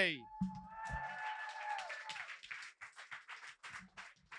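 Audience applause in a small club after the hosts are introduced, dense at first and thinning to a few scattered claps near the end. A single held high note sounds over it for about the first two seconds.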